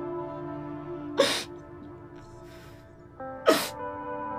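Soft background music of sustained notes under a woman crying: two sharp sobbing gasps, about a second in and again near the end, with a fainter breath between them.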